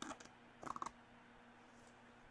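A large picture book being handled and moved: two short bursts of crackle and clicks, the second, louder one a little over half a second in.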